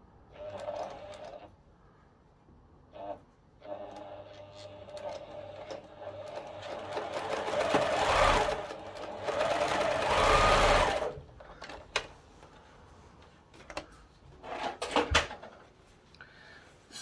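Pfaff electric sewing machine stitching a seam: a brief burst, then a longer run that speeds up and gets louder before stopping suddenly about eleven seconds in. A few clicks and handling noises follow.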